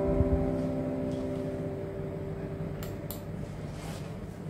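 Acoustic guitar's final strummed chord ringing out and dying away over about two seconds, with a soft low thump just after it starts and a couple of faint clicks near the end.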